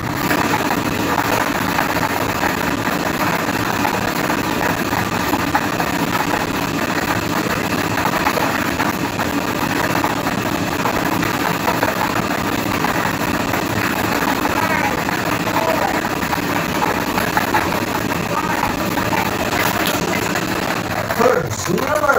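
Air-blown lottery draw machine running: a steady rush of air with many small plastic balls clattering against the clear drum. It starts abruptly.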